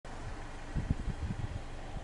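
Steady outdoor background noise with a low hum, and a run of low rumbling bumps on the microphone about a second in, typical of wind or handling as the camera pans.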